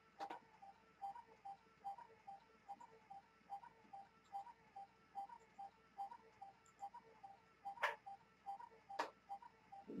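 Faint, even ticking, about three ticks a second, with a few sharp computer mouse clicks: one just after the start and two near the end, as a layer is filled with the paint bucket.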